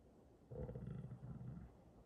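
A low, rough hum or grunt from a man with his mouth closed, lasting about a second and starting about half a second in.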